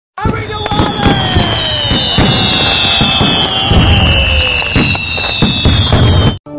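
Fireworks display: a dense run of bangs and crackling, with long, slowly falling whistles running through it.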